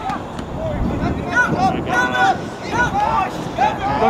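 Several voices shouting short calls across an outdoor soccer field during play, over wind rumbling on the microphone.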